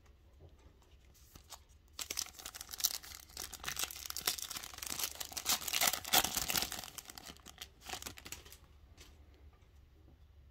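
A foil Panini Prizm retail trading-card pack crinkling and tearing as it is ripped open by hand. It is a fast run of crackles that starts about two seconds in, is loudest in the middle, and dies away near the end.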